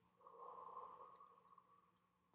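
A woman's slow, deliberate exhale through pursed lips, the out-breath of a deep belly-breathing exercise: a soft, breathy blowing that gradually fades away.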